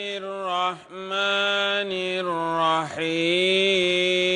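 A man reciting the Quran in Arabic in a melodic, chanted style, holding long notes, with two short breaks for breath about a second and three seconds in.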